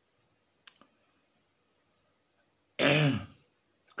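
Mostly quiet room with one faint short click just under a second in, then near the end a single brief voiced sound from a person, a short wordless vocal noise that rises and then falls in pitch.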